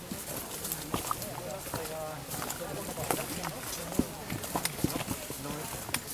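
Footsteps of several hikers on a stony trail, with irregular clicks and knocks of walking sticks and trekking poles striking the rocks.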